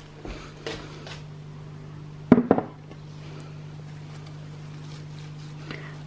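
A glass flower vase being handled on a windowsill: faint handling sounds, then a couple of sharp knocks about two and a half seconds in, over a steady low hum.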